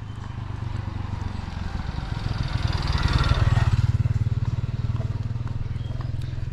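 A motorcycle approaching and passing close by, loudest about three seconds in and then fading, over a steady low pulsing engine drone.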